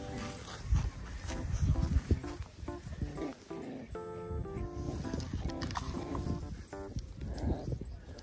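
A mame-shiba and a Pomapoo puppy play tug-of-war over a rubber toy, growling and grunting in irregular bursts, loudest in the first couple of seconds, over background music.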